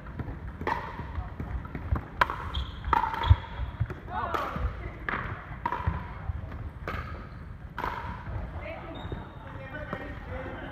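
Pickleball paddles hitting a hard plastic ball in a rally, with the ball bouncing on a wooden court: about half a dozen sharp pops spread over the ten seconds.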